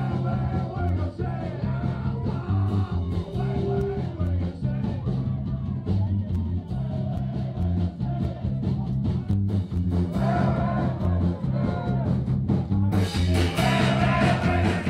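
A live band playing with singing, over a pulsing bass line and guitar; the music grows louder and fuller about a second before the end.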